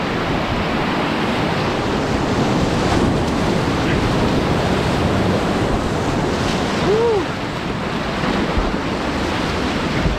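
Whitewater rapids rushing and splashing around a kayak, close to the water, with wind buffeting the microphone. A brief rising-then-falling tone cuts through about seven seconds in.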